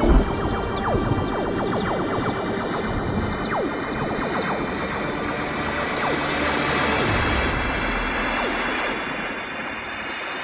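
Film-score music under a cinematic explosion effect: a deep boom at the very start, then a sustained rushing rumble covered in many quick falling whistling sweeps that thin out after about seven seconds.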